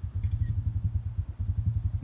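Motorbike engine idling with an even, rapid low throb.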